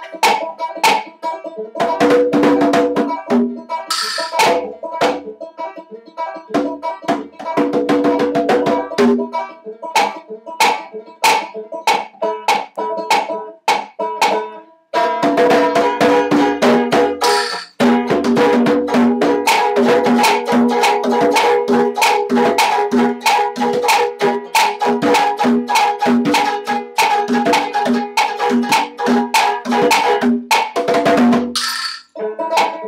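Banjo played together with hand-struck conga drums in a loose, informal jam. About halfway through the playing stops for a moment, then comes back busier, with a steady beat of about two strong notes a second.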